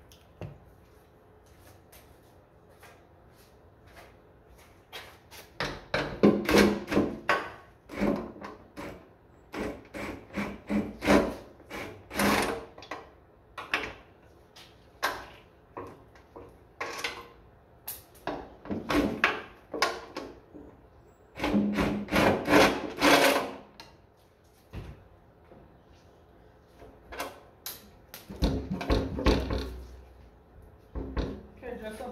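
Irregular clanks, knocks and scraping of hand work on a tractor's fuel tank and its mountings as it is worked loose for removal, in bursts with quiet gaps between.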